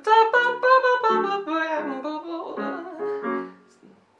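A woman scat-singing a jazz fill at the end of a phrase, over her own electric piano chords; the sung line winds downward and fades out near the end.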